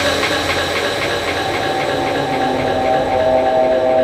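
Breakdown in a gritty drum and bass track without the beat: a sustained synth drone of several held tones over a soft tick repeating about four times a second, with a higher held tone growing louder near the end.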